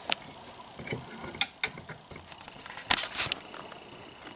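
Sharp clicks and light rattles from handling a three-way floor lamp as its shade is settled and its switch is turned. Near the end a faint, steady high tone comes in as the lamp lights.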